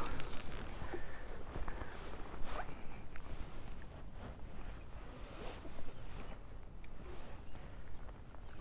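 Faint, irregular clicks and rustles of fly-fishing tackle, line and reel, as a hooked rainbow trout is played in toward the net, over a steady low wind rumble on the microphone and light rain.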